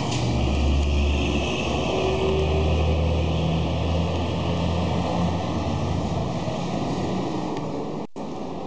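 Low rumble of a motor vehicle's engine, steady for several seconds and fading near the end.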